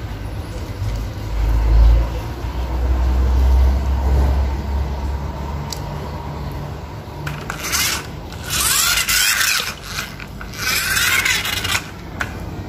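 Toy cars pushed by hand over ceramic tile: a low rumble in the first few seconds, then three bursts of scraping and rubbing in the second half.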